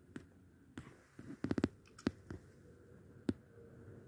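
Handling noise: a few light clicks and knocks, with a quick run of four about a second and a half in.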